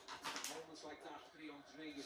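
A faint voice speaking quietly in a small room, low under room tone; no other sound stands out.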